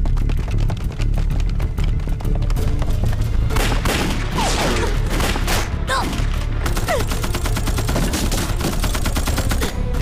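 Dense gunfire from rifles and a machine gun in a staged battle, many shots overlapping in quick succession, with dramatic music underneath.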